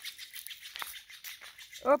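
Footsteps rustling and crunching through dry fallen leaves, an irregular crackle.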